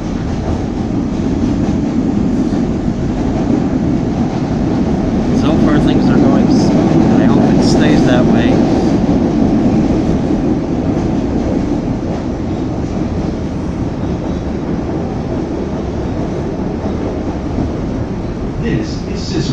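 CTA Blue Line rapid-transit car running at speed, heard from inside: a steady low rumble of wheels on the track. It swells louder about five seconds in and eases off again after about ten seconds, with a few short high-pitched squeaks and clicks in the loud stretch.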